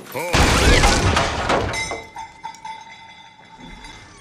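A sudden loud crash about a third of a second in, lasting over a second. It is followed by a fading ringing tail of several steady tones.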